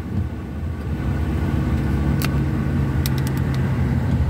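Vehicle engine and tyre noise on a wet road, heard from inside the cab while driving: a steady low hum, with a few short clicks between about two and three and a half seconds in.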